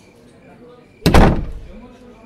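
A door shutting with a single heavy bang about a second in, dying away over about half a second.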